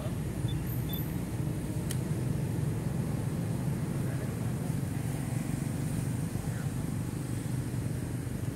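Steady low outdoor background rumble, even throughout, with a faint click about two seconds in.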